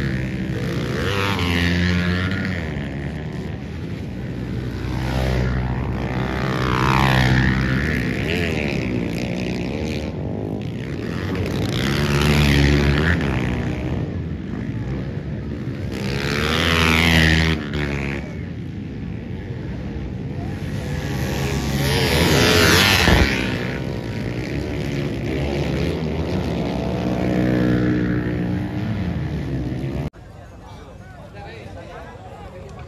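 Motorcycle and scooter engines revving hard as riders accelerate past one after another, about six passes roughly five seconds apart, each rising and then falling in pitch as it goes by.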